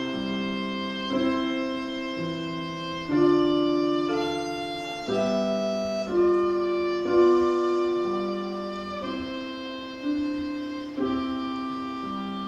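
Violin and Kawai digital piano playing a slow piece together, the piano's chords changing about every second or two, each struck afresh and then dying away under the violin's bowed line.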